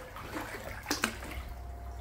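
Faint water sounds from a hot tub, with two short sharp clicks about a second in.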